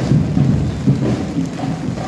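Heavy rain pouring down on a wet street, a steady hiss with an uneven low rumble beneath it.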